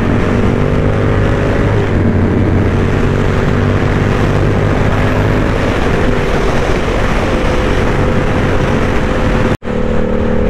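Sport motorcycle engine running steadily at highway speed, heard from the rider's mount with wind rushing over the microphone. The sound cuts out for an instant near the end.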